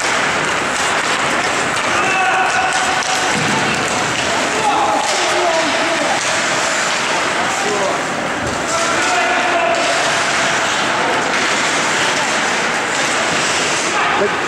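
Ice hockey game sound in an indoor rink: a steady noisy background of skates and play, with shouted calls from players or spectators a few times and occasional knocks of sticks and puck.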